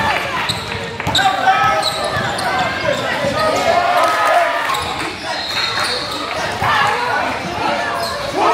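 Indoor basketball game: overlapping voices of players and spectators calling out, with a basketball bouncing on the court now and then, all echoing in a large gym.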